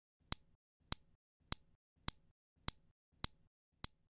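Newton's cradle steel balls clacking together: seven sharp clicks at an even pace of just under two a second, the last a little fainter.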